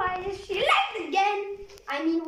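A young girl's high voice vocalizing without clear words, its pitch rising and falling, in two stretches with a short break about a second and a half in.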